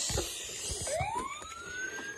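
Toy police truck's siren: a single wail that starts about a second in, rises in pitch and holds high. A few light knocks from the plastic toy being handled come at the start.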